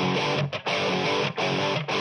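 Balaguer Espada electric guitar played alone on its bridge humbucker split to a single coil, strummed chords broken by three short gaps.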